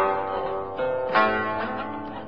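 Background music of a plucked-string instrument, chords struck and left to ring out, a new one about every half second to second.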